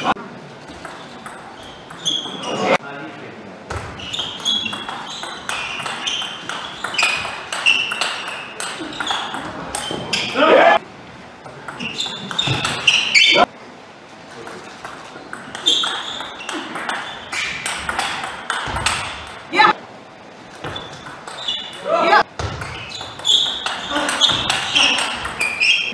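Table tennis rallies: the ball clicking in quick runs off rackets and table. Short voice outbursts come between points.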